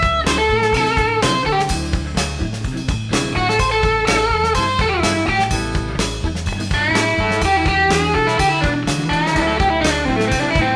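Electric blues band playing an instrumental passage: a lead electric guitar with bent notes over drums and bass, with no vocals.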